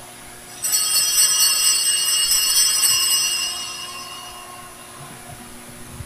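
A cluster of small altar bells, shaken just over half a second in. They ring rapidly for about two and a half seconds, then die away over the next second or so. The ringing marks the priest's communion.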